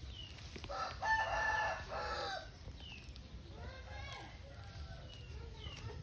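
A rooster crowing once, about a second in: a single crow of several joined parts lasting about a second and a half, the loudest sound here. Fainter short chirps and calls follow.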